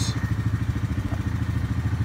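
2018 Yamaha Grizzly 700 SE's single-cylinder four-stroke engine idling steadily in park, with a low, even pulse about a dozen times a second.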